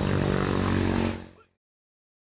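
A steady low engine drone that fades out a little over a second in, after which the sound cuts to dead silence.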